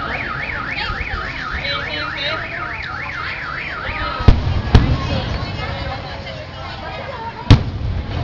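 A car alarm sounding a fast up-and-down wail, about four sweeps a second, which stops about four seconds in. Fireworks shells then burst with sharp bangs, two in quick succession shortly after and one loud one near the end.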